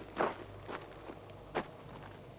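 Footsteps of shoes on a gravel dirt road: three separate crunching steps, the first the loudest.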